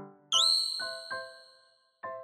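A single bright, high ding chime about a third of a second in, ringing and slowly fading, over soft background piano music.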